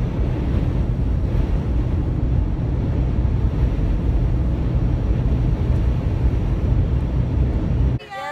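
A car on the move: steady low road rumble and wind noise.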